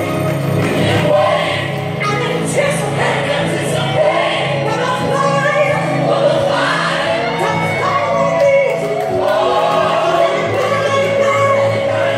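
Gospel song with choir singing over a band accompaniment, playing continuously and loudly.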